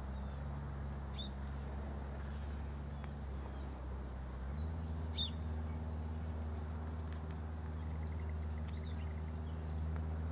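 Faint, scattered chirps of small birds, the clearest about five seconds in, over a steady low hum whose pitch steps up about halfway through.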